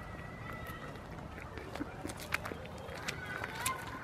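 Goat biting and chewing a cucumber held in a hand: irregular sharp crunches, most of them in the second half.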